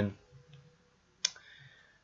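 A single sharp click about a second in, during a quiet pause.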